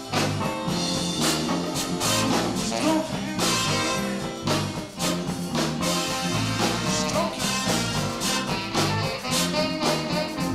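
Live band playing an instrumental passage with a steady beat and a bass line stepping from note to note.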